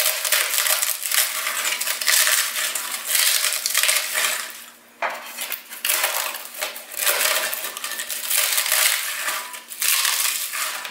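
Dry matzo sheets snapping and crunching as they are broken by hand into small pieces, the fragments rattling into a glass bowl. The crackling comes in repeated bursts, with a brief lull about halfway through.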